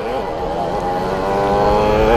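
Engine of a 50cc junior motocross motorcycle running at a steady high pitch, growing louder toward the end.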